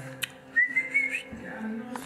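A single short whistle, a thin pure tone that rises slightly and turns up at its end, lasting a little over half a second, over steady background music.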